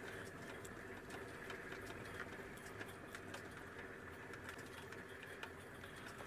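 Open safari vehicle's engine running faintly at low speed off-road, a low steady hum with scattered light ticks and rattles.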